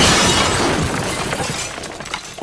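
Sound-design effect for an animated logo reveal: a loud noisy burst that fades steadily, breaking up into scattered sharp clicks like shattering glass near the end.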